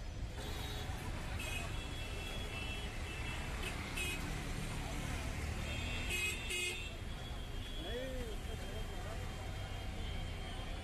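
Busy city street traffic: a steady rumble of engines, with several short vehicle horn toots, two quick ones close together about six seconds in.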